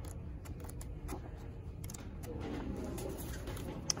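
Pages of a book being turned by hand: faint rustles and light ticks over a low steady background hum.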